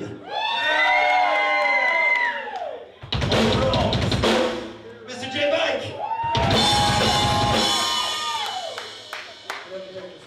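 Heavy rock music: long held notes with bends that slide up and back down, broken by two loud stretches of full drum kit and cymbals, one about three seconds in and one about six seconds in. It fades over the last couple of seconds.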